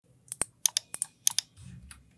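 A quick run of sharp clicks from a computer keyboard and mouse, about eight in just over a second, followed by a faint low sound near the end.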